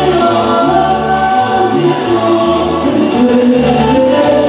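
Live Peruvian cumbia band playing at full volume, with a woman singing held, gliding notes over a repeating bass line.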